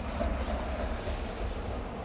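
Low, steady rumble of wind buffeting the microphone in an open field.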